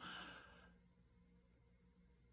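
A man's soft breath through the mouth, like a sigh, fading out within the first second, then near silence.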